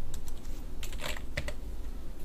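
Computer keyboard keys tapped about half a dozen times at an uneven pace: a short burst of typing as a number (75 divided by 2) is entered into a CAD dialog's distance field.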